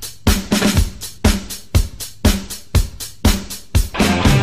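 Drum kit playing a steady rock beat on its own, kick and snare hits about two a second with hi-hat, as the intro of a music track.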